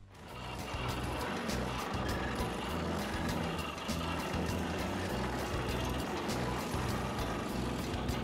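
An excavator working an Xcentric Ripper XR40, the vibrating eccentric ripper tooth breaking into rock: a steady machine rumble with rapid ticking and clatter, under background music.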